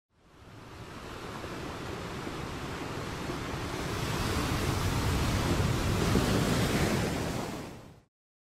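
Ocean surf: a steady rush of waves that fades in, swells toward the end and fades out.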